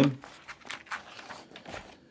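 A workbook page being turned by hand: faint paper rustling with a few light handling clicks.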